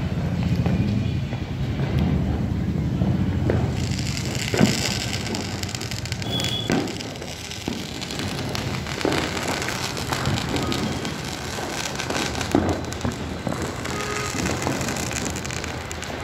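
Firecrackers going off now and then, irregular sharp pops and bangs with the loudest about four and a half seconds in and again near twelve and a half seconds, over a steady background of distant voices.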